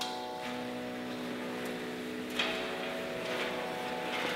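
Background music holding sustained notes like a drone, over a faint hiss. A few short clicks or knocks come through it, the loudest about two and a half seconds in.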